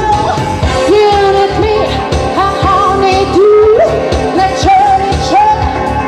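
A woman singing live into a handheld microphone, holding long notes that slide up into pitch, over pop-soul accompaniment with a steady drum beat.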